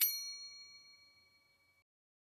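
A single bright 'ding' sound effect for clicking a subscribe notification bell: a bell-like chime that strikes once and rings out, fading away over nearly two seconds.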